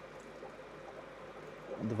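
Steady low trickling and bubbling of water from rows of running aquariums.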